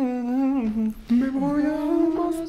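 A voice humming a slow, wordless melody in long held notes, with a brief break about a second in.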